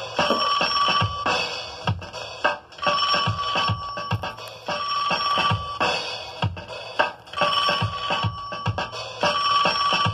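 Hip-hop beat played from a vinyl record on a turntable: drum-machine kicks about twice a second under a repeating high tone held for about a second at a time.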